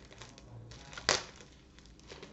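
Plastic shrink-wrap being peeled off a book: faint crinkling and clicking, with one sharp crackle about a second in.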